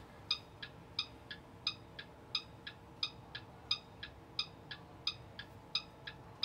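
School bus turn-signal flasher ticking with the right-hand signal on: an even tick-tock at about three clicks a second, alternating louder and softer.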